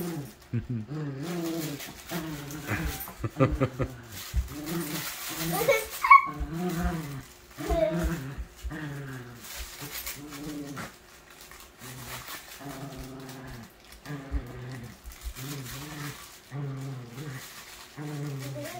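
Small dog growling in play while tugging on a toy, a run of short low growls repeating every half second to a second, with a sharper yelp-like sound about six seconds in.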